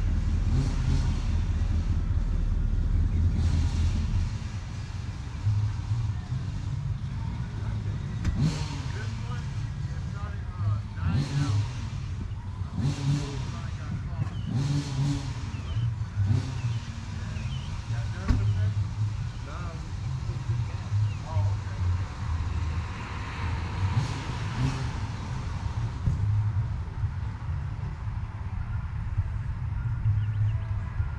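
Off-road vehicle engine running, louder for the first four seconds, then lower with repeated revs rising and falling in pitch and short bursts of noise.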